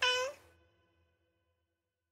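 A single short cat meow, used as a sampled note, at the very start, its pitch dropping at the end, followed by a faint tail that dies away.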